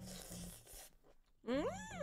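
A woman's closed-mouth hum, "mm", starting about one and a half seconds in, rising and then falling in pitch. It is preceded by a brief soft hiss.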